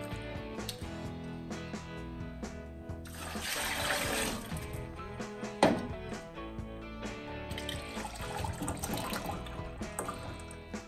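Lemon juice poured from a measuring cup into a large plastic container, a rushing splash about three seconds in, then a sharp knock a little past halfway, and juice poured from a bottle into the measuring cup near the end. Background music with a steady beat plays throughout.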